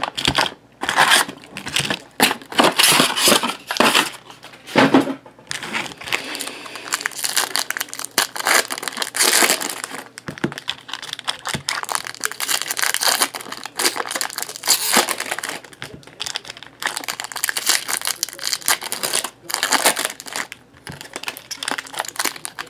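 Foil wrappers of trading-card packs being handled, torn open and crinkled by hand, in irregular bursts.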